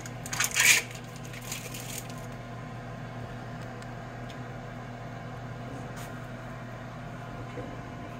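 Clear plastic wrapper of a string cheese stick crinkling as it is torn and peeled off, in bursts over the first two seconds. After that only a steady low hum continues.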